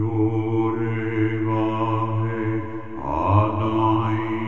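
A voice chanting a long held note over a steady drone. The chanted pitch slides upward about three seconds in.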